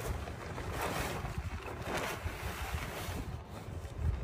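Wind buffeting the microphone, with the rustle of a fabric car cover being pulled off a car.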